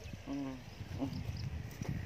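A quiet pause in a conversation, broken by a short, low murmured hum of a voice, like an 'mm', and a fainter one a moment later, with a few soft faint ticks.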